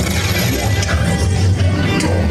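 Loud music from an indoor roller coaster's onboard soundtrack, over a deep, steady rumble of the coaster train running on its track.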